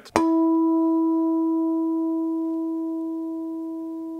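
Guitar's low E string plucked once as a natural harmonic, damped at the 5th fret, ringing a clear E about 330 Hz (the string's third overtone, two octaves above the open string) with fainter higher overtones, slowly fading.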